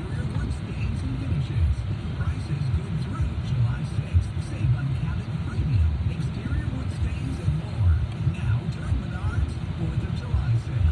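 Low, uneven rumble inside a car's cabin as it drives slowly, with a car radio's talk and music playing faintly underneath.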